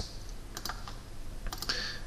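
A few light clicks of computer input, about half a second in and twice more around a second and a half in, over faint room hiss.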